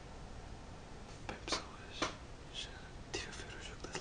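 A man whispering softly: a string of short, breathy syllables with hissing s-sounds and no voiced speech.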